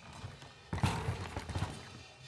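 Downhill mountain bike landing a dirt jump: a sudden impact about three-quarters of a second in, then about a second of rapid clattering knocks as the tyres and bike rattle over the dirt.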